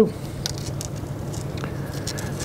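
Faint small clicks and rustles of hands working a cotton candle wick onto a length of steel wire, over a steady low hum.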